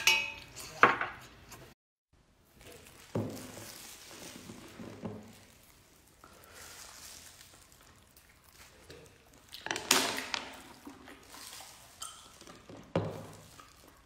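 Close-miked eating of shellfish: sucking and slurping meat from shells and chewing, with sharp clinks of chopsticks and shells in the first second. A short silence about two seconds in, then louder slurps around ten and thirteen seconds.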